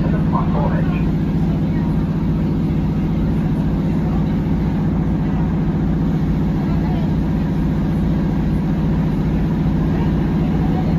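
Inside a moving Northern Class 150 diesel multiple unit: the steady drone of its underfloor diesel engine with running noise from the wheels on the track, unchanging throughout.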